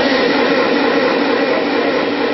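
A man's voice holding one long, unbroken note through a loudspeaker system, heard under a steady hiss.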